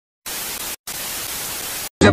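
Television static sound effect: an even white-noise hiss in two stretches, split by a short gap just under a second in, after a brief silence at the start.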